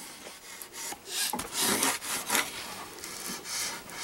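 Laminating film being rubbed and smoothed down over the edge of a foam stabilizer, a hissing, scraping friction sound in several uneven strokes.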